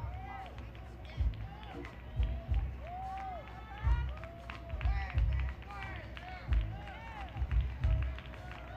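Live smooth-jazz band with a flute playing the lead. Short flute phrases bend up and down over bass and kick-drum hits.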